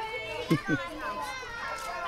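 Several children's voices talking and calling out over one another, with a "thank you" among them.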